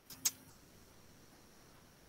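Near silence: quiet room tone over a video-call microphone, broken once by a short, faint click-like sound about a quarter second in.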